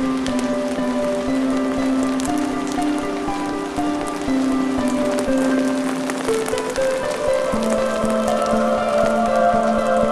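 Slow background music of held notes that step from one pitch to the next, over heavy rain falling on a pond, with many small drop ticks.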